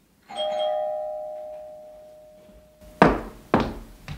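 A doorbell chime rings once and fades out over about two and a half seconds. Near the end come two sharp clunks about half a second apart, the loudest sounds here.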